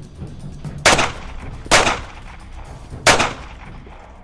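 Three gunshots, each with a short echoing tail: two less than a second apart about a second in, and a third about three seconds in.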